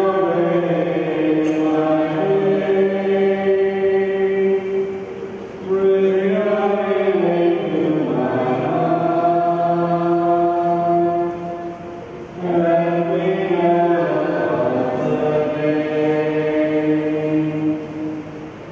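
Voices singing a slow communion hymn in long held notes, in three phrases with short breaks between them.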